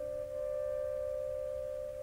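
Quiet orchestral passage: one soft, sustained woodwind note is held almost alone, pianissimo, while a lower note dies away just after the start.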